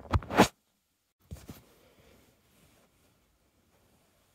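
Handling noise. A loud, harsh rustle in the first half second, then a fainter rustle about a second later, as the camera is shifted close over the knitted sweater.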